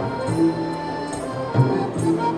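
Live Rong Ngeng dance music: an accordion holding a melody over a hand drum, with a deep drum stroke about one and a half seconds in.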